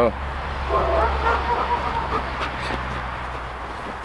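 Young dog barking in a short run starting about a second in, over a steady low hum.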